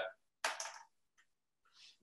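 Mostly silence on a video call's audio feed, broken by one short rushing noise about half a second in and a fainter hiss near the end.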